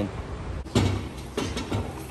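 A few dull knocks and clunks of hands-on work at a car's wheel and tire while the car sits on a floor jack, the loudest knock about three-quarters of a second in.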